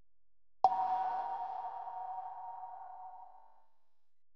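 A single bell-like ping, struck about half a second in, ringing on one tone and fading out over about three seconds.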